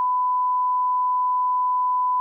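Broadcast test tone: the 1 kHz reference tone that goes with television colour bars, one steady pure beep held without change.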